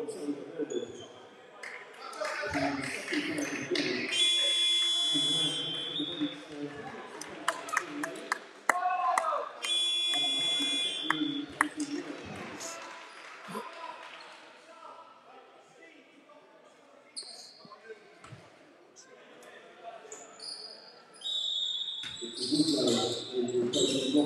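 Basketball game buzzer sounding twice, each blast about a second and a half long and about five seconds apart, over scattered voices in a large hall. Sharp thuds of a basketball bouncing on the court floor come in between.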